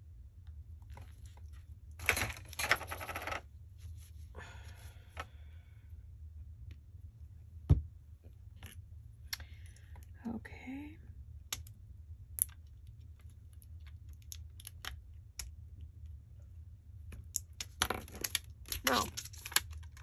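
Clear plastic backing sheet of adhesive pearl embellishments crinkling in short bursts as pearls are picked off it with a pointed tool, with scattered small clicks and one sharper tap about eight seconds in. A steady low hum runs underneath.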